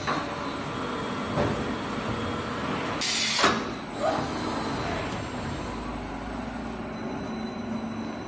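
Paper drum winding machine running, its rollers winding kraft paper onto a steel mandrel with a steady mechanical noise. A short, loud burst of hissing noise comes about three seconds in.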